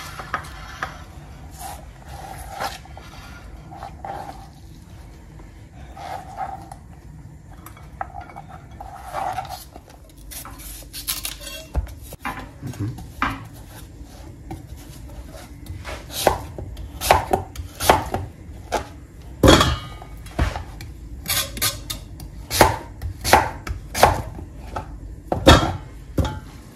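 A kitchen knife cutting a yam on a plastic cutting board. Soft scraping and handling come first, then from about ten seconds in come sharp, irregular knocks of the blade hitting the board, which grow more frequent and louder in the second half.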